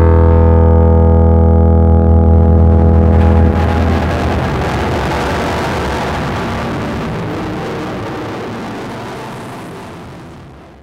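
A loud, low sustained musical drone with many overtones. After about three and a half seconds it dissolves into a noisy wash that slowly fades out.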